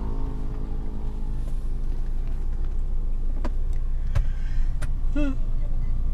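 Car cabin noise: a steady low rumble of the car's engine and road noise heard from inside, with a few sharp clicks in the second half.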